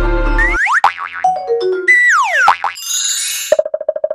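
Closing music cuts off about half a second in. A logo jingle of cartoon-style boing sound effects follows, its tones swooping down and up in pitch and ending in a quick stuttering tone.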